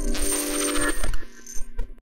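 Closing logo sting of an electronic outro jingle: a bright chord with a high hiss holds for just under a second and stops, followed by a few short clicks that die away.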